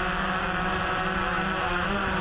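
Yuneec Typhoon H hexacopter's motors and propellers humming steadily while hovering.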